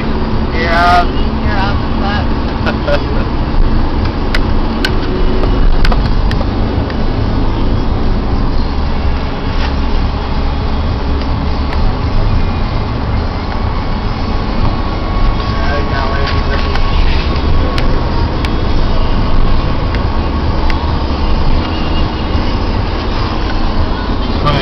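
Steady low rumble of a vehicle's engine and tyres heard from inside the cabin while driving, with a few sharp clicks and brief voices near the start.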